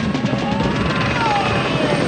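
Helicopter rotor beating fast and steady in a film soundtrack, with a faint tone that rises and falls under it.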